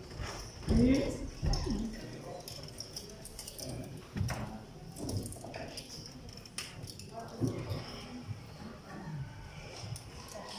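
Indistinct, off-microphone talk among several people in a large room, in short fragments with pauses, along with a few scattered knocks and clicks.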